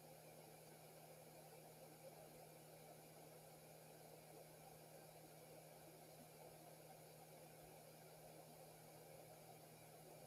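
Near silence: faint room tone, a low hiss with a steady low hum.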